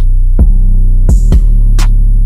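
Trap instrumental with no melody: a heavy 808 bass held under the beat, punctuated by kick drums and a sharp snare or clap hit near the end, at 129 BPM.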